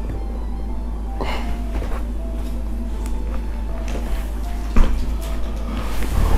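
Soft background music of short held notes over a steady low hum, with a brief sharp sound just before five seconds in.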